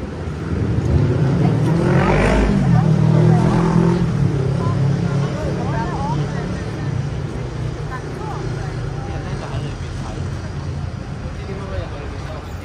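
A motor vehicle's engine passing close by: a low rumble that grows, is loudest about two to three seconds in, then slowly fades away.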